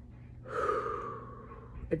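A woman drawing one audible breath lasting about a second, in a pause between her sentences.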